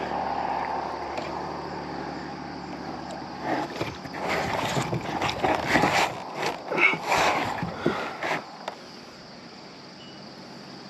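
River water sloshing and splashing as a large channel catfish is hauled in a landing net out of the water and into a kayak. A steady wash of water comes first, then a busy run of sharp splashes and knocks as the net and fish come aboard, dying away near the end.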